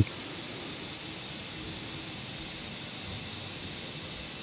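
Steady, featureless background hiss with no distinct sounds in it.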